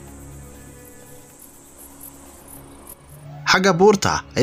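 Faint, rapidly pulsing insect chirping, cricket-like, over a low steady drone; the chirping fades out about two and a half seconds in. A man's voice starts speaking loudly near the end.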